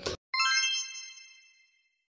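A single bright chime struck about a third of a second in, ringing with many high overtones and fading out within about a second.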